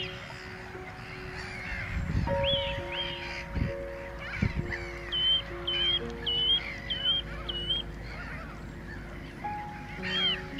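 Gulls calling in a colony: a busy chorus of short nasal calls, with a run of five repeated calls about twice a second in the middle, over background music of sustained chords. A few low thuds sound in the first half.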